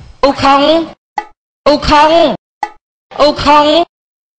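A short Thai vocal phrase from a DJ remix, repeated three times as a chopped sample with no beat behind it. Each repeat is cut off into dead silence, with two tiny clipped fragments in the gaps.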